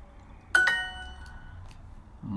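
Duolingo's correct-answer chime: a bright two-note ding about half a second in that rings out over about a second. It signals that the answer was accepted.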